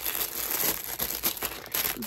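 Packaging crinkling and rustling as it is handled, a dense run of small crackles.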